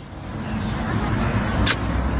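Low rumbling background noise that swells gradually through the pause, with a short hiss near the end.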